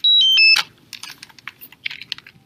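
Three loud electronic beeps stepping down in pitch, followed by a run of irregular sharp clicks.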